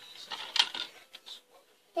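A few light scratches and taps of a drawing stick on a hard tabletop, faint, in two short clusters.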